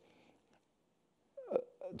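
A pause in a man's speech: near silence at first, then, about one and a half seconds in, a brief short vocal sound from him, like a hiccup-like catch of the voice, just before his words resume.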